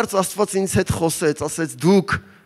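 Speech only: a man preaching in Armenian, talking quickly and rhythmically into a microphone.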